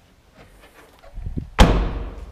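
Rear liftgate of a 2016 Hyundai Santa Fe Sport brought down and slammed shut: a brief low rumble, then one loud slam near the end.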